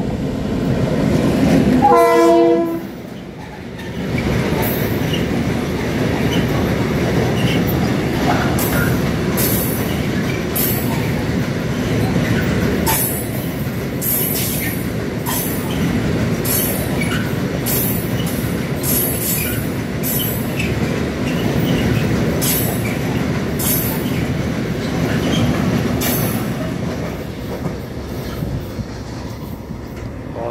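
Diesel locomotive SŽ 664-105 passing close with its engine running, sounding its horn briefly about two seconds in. A long train of tank wagons then rolls past, wheels clicking over the rail joints in a steady run of beats, until the sound eases near the end as the last wagon goes by.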